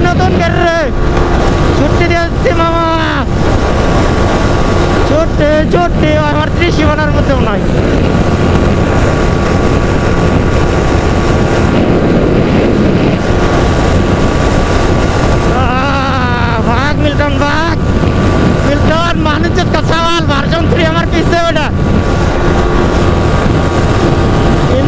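Yamaha R15 V3 single-cylinder engine running steadily at road speed, heavily buffeted by wind noise on the microphone. Voices call out a few times, twice near the start and twice in the second half.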